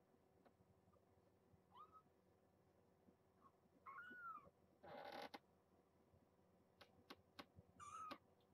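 Young kitten giving three short, faint mews, the middle one rising and falling in pitch. There is a brief rustle about five seconds in, and a few soft clicks.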